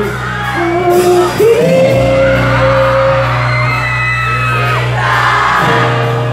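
Live band starting a song after a count-in: electric bass and guitar hold long chords, changing about a second and a half in and again near the end, while the concert crowd shouts, whoops and sings along.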